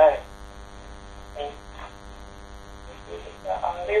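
Steady electrical hum on a telephone conference-call line during a pause in the talk. A voice trails off at the start, faint voice fragments come about a second and a half in, and speech starts again near the end.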